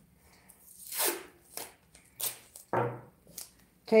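Hands handling a paper towel and masking tape: a handful of short, separate rustles and crinkles of paper.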